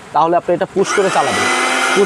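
Disnie 400 W multifunction blender motor switched on with its push button a little under a second in, whining up in pitch as it spins up and then running steadily.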